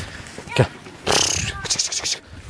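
A flock of lambs shuffling and faintly bleating as they are driven. There is a thump about half a second in, then a long hissing shush from the herder about a second in.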